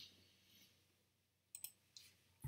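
Near silence, then three quick clicks of a computer mouse, the first two about a second and a half in.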